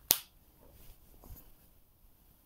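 A single sharp click about a tenth of a second in, then only faint small noises.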